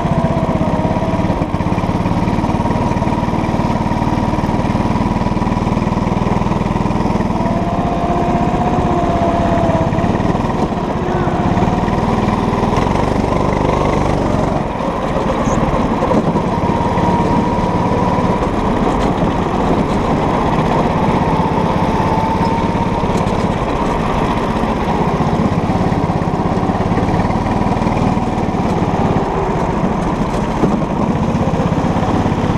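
Go-kart's small engine running steadily under throttle, heard from on board the kart, with its pitch rising and falling a little as it is driven round the track.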